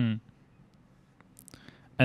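A brief murmured 'mm' at the start, then near silence broken by a few faint clicks about a second and a half in.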